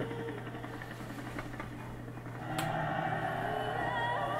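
Film trailer soundtrack playing back: a quiet, low stretch, then a click and sustained droning music tones that come in about two and a half seconds in and hold steady.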